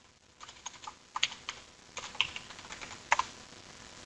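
Typing on a computer keyboard: an irregular run of light key clicks, starting about half a second in.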